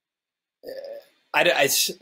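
Silence for about half a second, then a man's short voiced hesitation sound, then the start of his speech.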